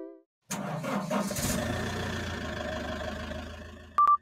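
A vehicle engine starting, then running steadily and fading away over about three seconds. A short high beep comes at the very end.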